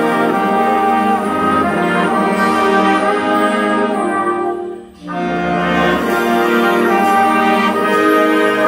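Student jazz big band playing, with full brass and saxophone section chords. About five seconds in, the band cuts off together for a moment, then comes back in.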